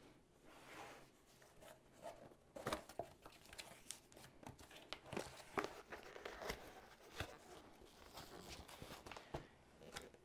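Long cardboard box being handled and opened by hand: faint scraping, tapping and rustling of cardboard with many small clicks.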